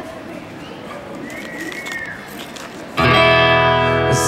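A quiet pause with faint background noise and a faint high gliding note, then about three seconds in an acoustic guitar comes in loud with a ringing strummed chord as the song starts.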